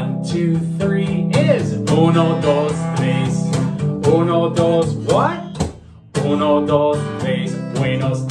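Steel-string acoustic guitar strummed in steady chords while a man sings a children's counting song along with it, his voice sliding up in pitch a couple of times. About five and a half seconds in the sound drops away briefly, then comes back suddenly.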